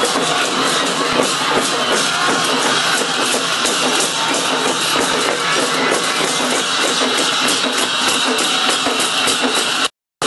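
Festival procession music: drums played alongside rapid, dense cymbal clashes, loud and continuous. The sound drops out briefly just before the end.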